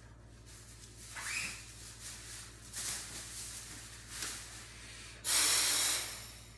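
Forced breaths drawn through an O2 Trainer handheld breathing-muscle trainer, the air rushing through its resistance mouthpiece. A few short, softer breath sounds come first. Near the end one long hard breath gives a loud steady hiss of about a second, then cuts off.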